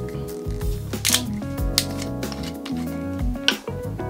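Background music with steady tones. Over it come a few sharp clicks as a metal screw cap is twisted off a wine bottle; the loudest clicks are about a second in and near the end.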